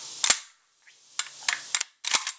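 Action of an SKB/Ithaca 900 shotgun cycled hard by hand: one sharp metallic clack about a quarter second in, then a few lighter clicks near the end as the bolt and locking parts move. It is cycled to show the locking lug not letting go of the bolt.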